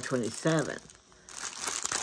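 Clear plastic packaging around a pair of socks crinkling as it is handled, the crinkling picking up again about halfway through after a brief lull.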